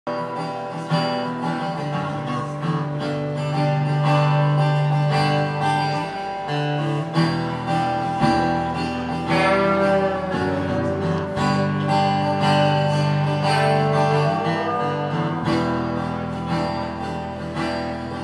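Acoustic guitar played live, chords strummed and ringing through a song's instrumental intro over a steady low note.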